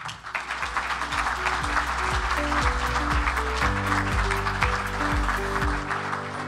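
Audience applauding over instrumental music with a steady beat of about two thumps a second.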